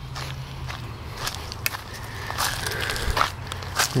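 Footsteps crunching through dry leaf litter and twigs, a string of irregular crackles and crunches at walking pace.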